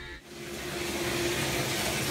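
Shower water running: a steady hiss that swells in over the first half second and then holds, with a faint steady tone beneath it.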